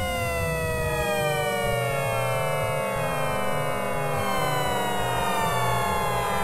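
Electronic synthesizer tones: a dense stack of pitches that begins at the start and glides slowly downward together, over a choppy, stepping low bass pattern.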